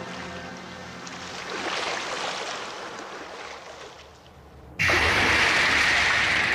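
Underwater sound effect: muffled bubbling and swirling water, then about five seconds in a sudden, much louder steady rush of surging water.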